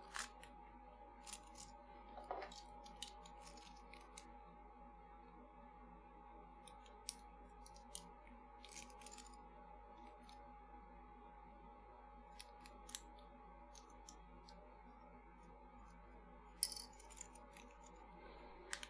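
Near silence: faint room tone with a steady faint hum and a few scattered small clicks and rustles of components being handled on the bench, a little louder near the end.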